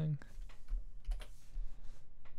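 Computer keyboard keys being tapped in an irregular run of quick clicks.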